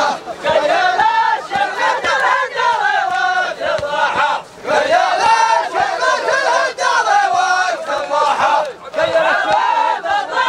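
A large group of men chanting loudly together in a traditional wedding dance chant, many voices on one rising and falling melody. The chant dips briefly about four seconds in and again near the end.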